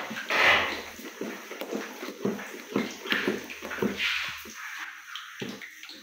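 Wooden spoon stirring thick ground-bean batter in a pot, making irregular wet scrapes and strokes.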